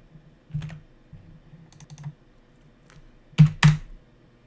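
Computer keyboard typing: a few light, scattered keystrokes, then two louder key strikes close together near the end.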